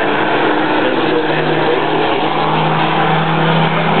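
Drag-strip car engines running steadily, a loud engine drone holding one low pitch with no revving.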